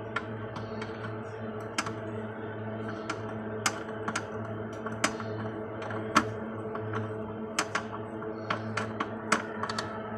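Screwdriver clicking and tapping against screws and the sheet-metal mounting of a circuit board inside a Toshiba e-Studio photocopier, in irregular sharp clicks, as screws are driven in. A steady low hum runs underneath.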